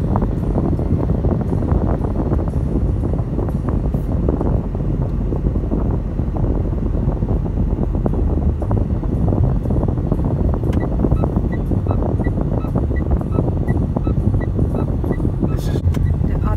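Music playing over the steady road and wind noise of a car driving on a city highway, with a run of light, even ticks near the end.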